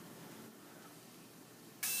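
Quiet room tone, then near the end a dental handpiece spinning a small disc against the teeth starts abruptly: a steady high-pitched whine with a hiss, used to shape and finish the composite fangs.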